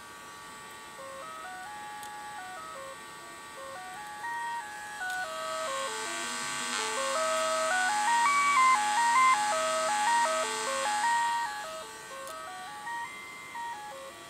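Homebuilt signal tracer's loudspeaker playing the AM test tone that its RF probe demodulates from a signal generator. The tone's pitch steps up and down in small jumps as the modulation frequency is dialled, with a hiss behind it that swells in the middle and fades again.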